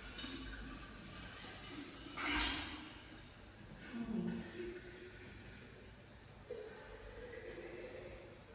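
Kitchen tap running water into the sink, with a brief louder rush about two seconds in.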